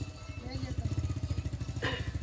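An engine running steadily with a low, even throb.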